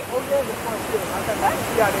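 River waterfall rushing steadily over rock ledges, with people's voices talking over it.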